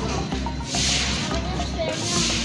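Dry husk potting mix rustling and crunching in short spells as hands press it around a plant's roots in a plastic pot, over a low steady hum.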